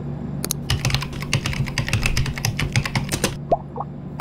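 Typing on a computer keyboard: a quick run of key clicks that stops shortly before the end, as a chat prompt is entered.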